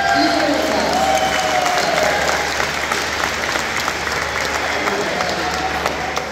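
Audience applauding: dense, steady hand-clapping, with voices calling out over it in the first couple of seconds and again near the end.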